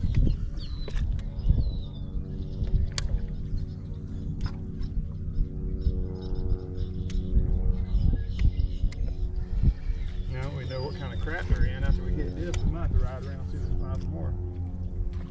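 A steady low hum with a wavering rumble on the microphone and a few sharp clicks; a wavering, voice-like sound comes in about ten seconds in.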